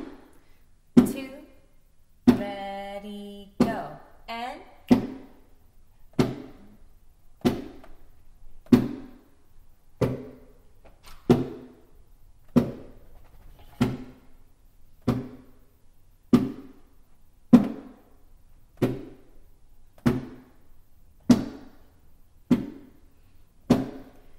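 A steady pulse of percussive beats, about one every 1.25 seconds, keeping time for a rhythm-clapping exercise, with a few lighter strokes between some beats.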